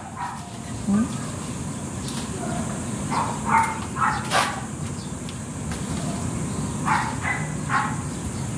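A dog barking several times in short separate barks, in two bunches, over steady low background noise.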